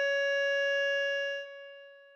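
Electronic keyboard holding a single sustained note, which cuts away about one and a half seconds in and leaves a faint fading tone.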